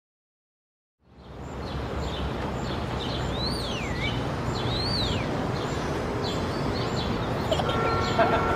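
Outdoor street ambience fading in after about a second of silence: a steady low rumble of traffic under a general hiss of noise, with birds calling, including two swooping chirps that rise and then fall in pitch near the middle.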